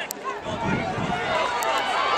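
Spectators shouting and cheering, many voices overlapping, growing louder toward the end.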